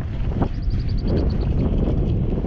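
Wind buffeting the camera microphone: a steady, heavy low rumble, with faint small ticks about half a second to a second and a half in.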